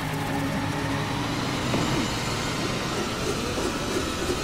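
Cartoon sound effect of a truck engine running and its body rattling as it drives away over a rough road, at a steady level.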